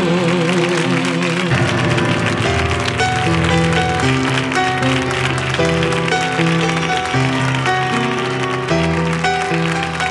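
A live band plays an instrumental passage of chords moving every half second or so, just as the singer's held last note dies away. Audience applause is mixed in under the music.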